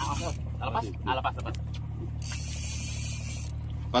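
Fishing reels under load in a fight with a hooked fish: ratcheting as the handles are cranked, with spells of hissing drag as line is pulled out, over the steady low hum of the boat's engine. Faint voices in the first second or so.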